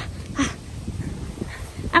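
An adult's short, rhythmic "uh" grunts while running, about two a second, the last about half a second in; after that only low background noise until a word is spoken at the very end.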